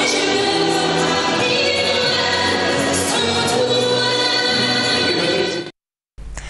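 Music with a choir singing, many voices holding notes together, that cuts off suddenly shortly before the end.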